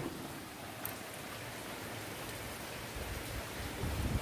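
Steady heavy rain falling outside, an even hiss, with a low rumble coming in near the end.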